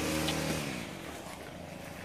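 A vehicle engine hum that fades away over the first second, its pitch dropping slightly, leaving a low outdoor hiss.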